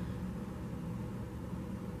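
A steady low hum with a faint hiss: room background noise, with nothing else happening.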